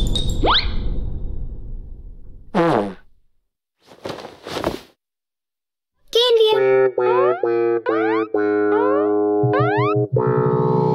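Cartoon soundtrack: a fading noise with a quick rising whistle, then a short falling cartoon voice sound and a few brief noises, a moment of silence, and from about six seconds in a bouncy children's-cartoon jingle full of quick upward pitch glides.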